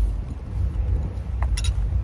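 Low, uneven outdoor rumble in a parking lot, with a couple of faint clicks about a second and a half in.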